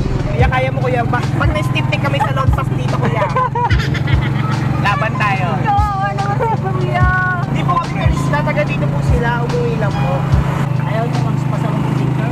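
Engine of a passenger vehicle running with a steady low drone while riders talk and laugh over it inside the cabin, with occasional low thumps.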